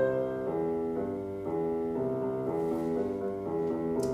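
Finale music-notation software playing back a short, simple melody in a computer piano sound. The notes follow one after another at an even pace, starting at once.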